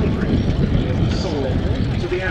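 Sopwith Pup's rotary engine running as the biplane flies past, a steady drone with pitch lines that rise and fall, heard under a commentator's voice.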